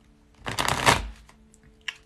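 Tarot deck being riffle-shuffled: a rapid flutter of cards lasting under a second, followed by a few light card clicks near the end.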